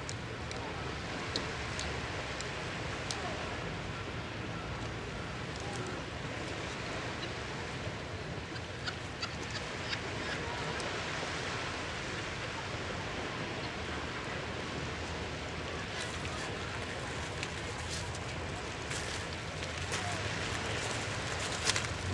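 Steady hiss of wind and surf on a shingle beach, with scattered small clicks and a few faint gull calls.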